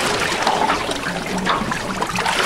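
Water lapping and trickling against the hull of a small boat, a steady irregular wash of sound.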